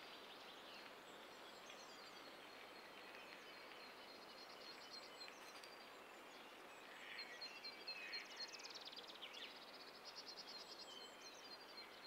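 Faint outdoor ambience with small birds chirping, the calls busier from about seven seconds in.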